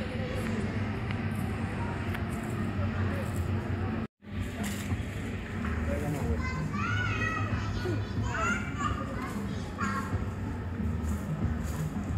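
Outdoor street ambience with children's voices calling and shouting, clearest in the second half, over a steady low rumble. The sound cuts out completely for a split second about four seconds in.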